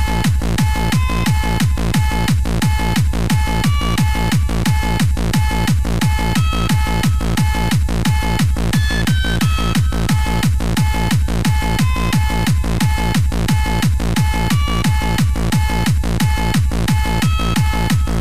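Hardcore rave music from a live DJ mix: a fast, steady four-to-the-floor kick drum with short high synth notes over it.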